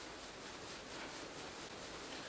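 Quiet room tone: a faint, steady hiss with no distinct sound.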